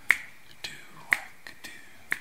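Finger snaps keeping a slow beat, two sharp snaps about a second apart, with fainter clicks between them.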